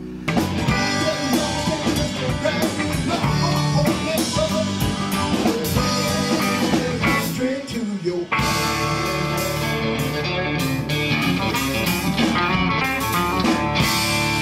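Live band playing: electric bass, electric guitar and drum kit with keyboard, in a steady groove. Just after eight seconds the music cuts abruptly to a different passage by the same full band.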